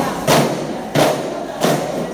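A group of aravana, large one-sided hand-held frame drums of wood and skin, struck together in unison, giving a steady beat about every two-thirds of a second.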